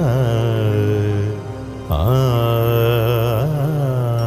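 Malayalam Christian devotional song: a singer holding long, wavering notes over accompaniment, with a short dip about a second and a half in before the next held note.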